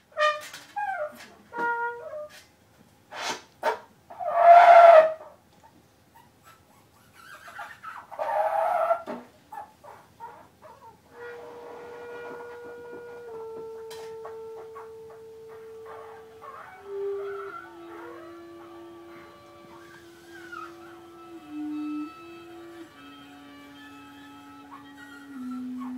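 Free-improvised trio of clarinet, trombone and viola. The first part is short, loud stabs and smeared blasts with sharp clicks between them; then a single long held note steps slowly down in pitch with fainter sustained notes above it.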